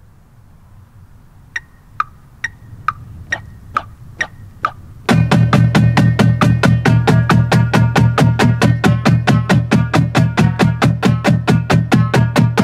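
A marching drumline warming up: eight evenly spaced stick clicks count off the tempo. About five seconds in, the whole line of snare drums, tenor drums and tuned bass drums comes in together, playing loud, rapid, even strokes.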